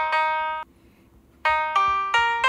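Piano notes from the Perfect Piano phone app, tapped out on the touchscreen keyboard: a couple of notes, then the sound cuts off suddenly. After a pause of under a second, new notes begin in the second half.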